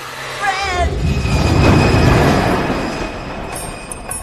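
Cable car running along its cable: a rumbling swell that builds to a peak about halfway through and then fades. A short wavering pitched sound comes just before it, near the start.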